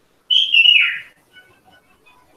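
A loud, high, whistle-like call that falls in pitch, lasting under a second, followed by a few faint high chirps.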